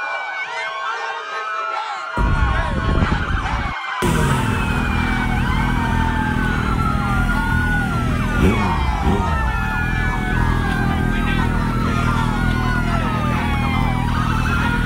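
Many overlapping sirens wailing up and down. A steady low hum comes in about two seconds in and grows louder at four seconds.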